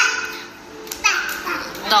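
A young child's high voice talking, with a brief high-pitched cry right at the start and more speech from about a second in.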